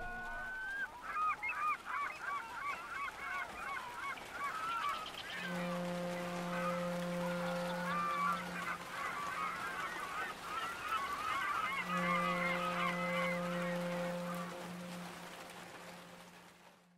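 A flock of birds calling over and over in short wavering honks. A low, steady horn note sounds twice for about three seconds each, about five seconds in and again about twelve seconds in. The whole sound fades near the end.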